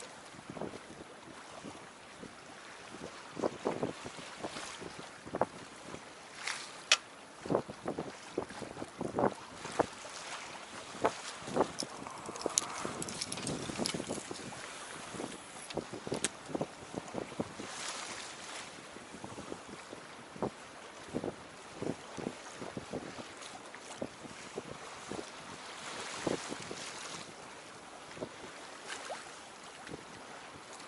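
Small waves lapping against a boat's hull, giving irregular knocks and slaps about once or twice a second, over wind noise on the microphone that swells briefly a few times.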